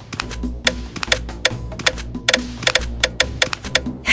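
Background music: a low bass line under quick, uneven sharp clicks, several a second.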